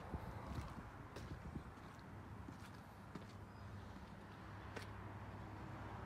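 Faint low steady hum with a few soft, irregular footsteps or light knocks.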